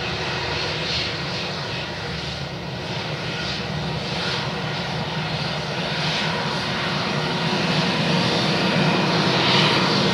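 Airbus A320-232's twin IAE V2500 turbofan engines running at taxi power: a steady jet rumble with faint high steady tones, growing louder toward the end as the airliner taxis past.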